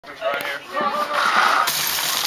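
People's voices, then, about a second and a half in, a sudden rush of gravel starts pouring out of a tipped bucket down into a pit.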